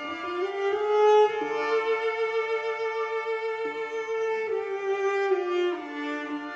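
Background music on a bowed string instrument: slow, sustained notes that slide up into a long held note about a second in, then step down again near the end.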